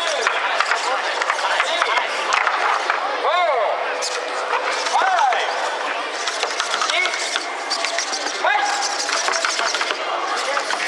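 Small humanoid fighting robots' servo motors whining in short glides that rise and fall in pitch, several times, among light clicks and clatter from their moving limbs and feet. Background chatter runs throughout.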